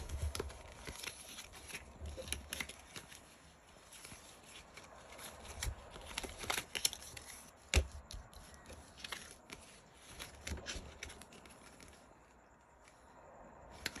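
Tarot cards being shuffled and handled by hand, with soft flicks, rustles and taps of card stock as cards are pulled and laid on the table. A sharper snap comes about eight seconds in.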